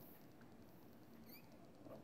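Near silence: faint room tone, with slight handling sounds of a hand on the stamping tool's plate.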